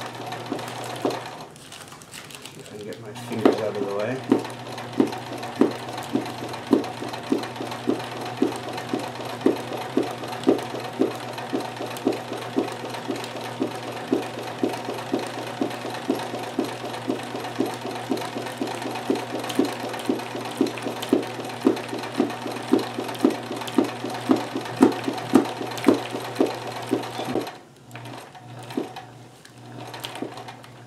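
Kenmore 158.1914 oscillating-hook sewing machine running fast, doing free-motion embroidery with no presser foot fitted: a steady motor hum with a regular knock of the needle and hook mechanism. It slows briefly about two seconds in, runs steadily again, and stops a few seconds before the end.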